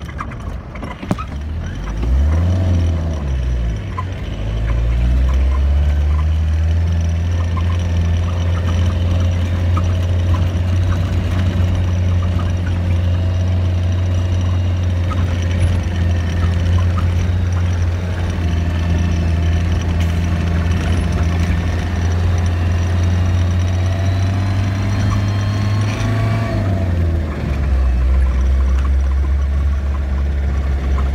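1990 Land Rover Defender engine heard from inside the cab, its pitch rising and falling over the first few seconds, then holding a steady note under load for about twenty seconds before dropping to a lower note a few seconds before the end.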